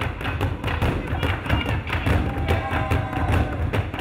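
Burundian drum ensemble playing: large drums struck with sticks in a fast, dense run of heavy beats.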